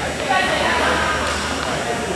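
Indistinct voices of several people talking, carrying in a large gymnasium.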